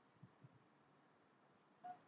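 Near silence: room tone, with two faint low taps about a quarter and half a second in.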